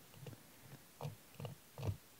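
Faint, soft ticks, about one every half second, as a precision screwdriver turns a tiny Phillips-type screw out of the side of a BlackBerry Classic's frame.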